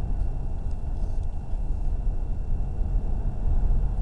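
Steady low rumble of road noise inside a moving car's cabin, with a few faint clicks in the first second and a half.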